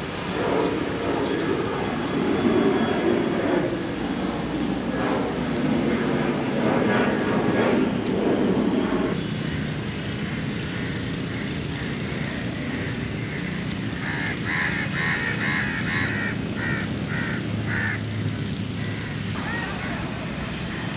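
Loud engine noise from something passing, its pitch slowly falling over about nine seconds. It breaks off abruptly, and quieter outdoor background follows, with voices briefly near the end.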